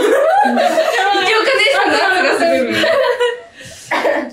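Several young women laughing together, loud and unbroken for about three seconds before it dies away.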